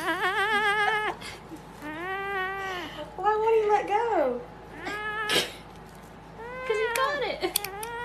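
Kitten meowing over and over: about six drawn-out meows, the first wavering in pitch and the rest rising and falling. There is a single sharp click a little past the middle.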